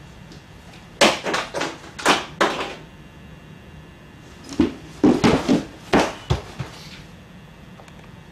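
Two clusters of short knocks and thuds, the first about a second in and the second around five seconds in, each a quick run of separate hits.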